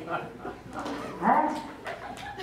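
A single short yelping bark that rises and falls in pitch about a second and a quarter in, over scattered voices in the room.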